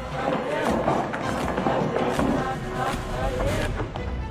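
Soundtrack music with a regular beat, with voices calling out over it.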